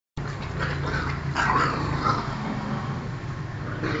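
Two small dogs growling in short rough bursts as they play-fight, over a steady low hum.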